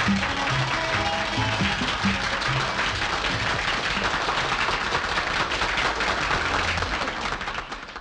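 The last notes of a Greek laïko band with bouzouki, guitar and accordion, quickly taken over by an audience's applause, which then fades out near the end.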